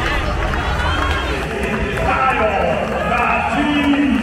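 Arena public-address announcer's voice echoing over steady crowd noise and a low rumble, introducing players as they take the floor.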